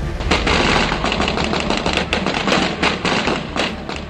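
Rapid, irregular automatic gunfire with many shots in quick succession, over a low, steady music bed.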